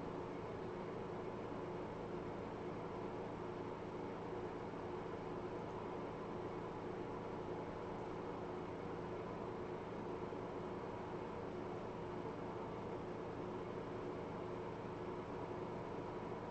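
Faint, steady hiss and electrical hum of room tone, with several constant low hum tones and nothing else happening.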